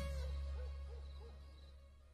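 An owl hooting, a quick run of soft hoots in the first second, over a low drone that fades away.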